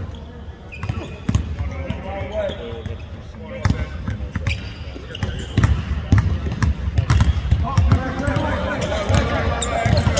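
Basketballs bouncing on a hardwood court, a run of irregular thuds from several balls, with voices talking.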